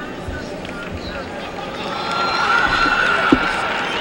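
Arena crowd noise of many voices that swells about halfway through, with one long held shout rising above it and a single sharp smack near the end.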